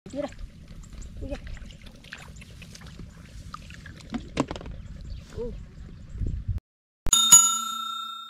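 Outdoor field sound with a low rumble and a couple of short vocal sounds, then after a brief silence a loud, bright bell-like chime, struck twice in quick succession, that rings on and fades. The chime is a sound effect for the channel's subscribe card.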